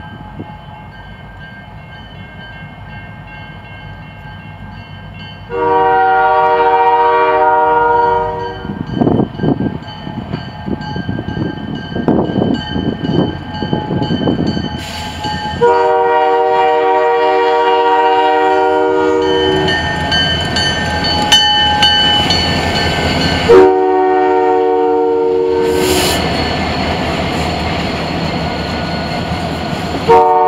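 CN diesel freight locomotive's air horn blowing long, long, short, with a fourth long blast starting at the very end: the long-long-short-long signal for a grade crossing. Between the blasts the locomotive's diesel engine and the train's rumble grow louder as it passes, ending with covered hopper cars rolling by.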